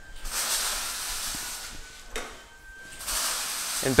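A steady hissing noise in two stretches, with a short break and one brief burst a little past halfway.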